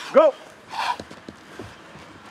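A man shouts "Go!" once at the start. A short breathy burst follows just under a second in, then a low grassy-field background with a few faint light taps.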